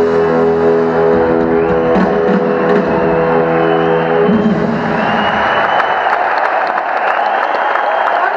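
A live rock band ends a song: the final chord, with electric guitar, is held and rings out, then stops about halfway through. Arena crowd applause and cheering swell in its place.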